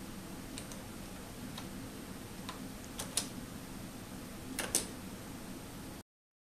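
A few scattered computer keyboard keystrokes, sparse single clicks and then two louder pairs of clicks, over a low steady hum from the computer.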